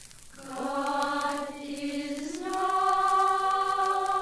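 Sustained choir-like singing in held notes. After a brief dip at the start, the pitch glides up to a higher held note about two and a half seconds in.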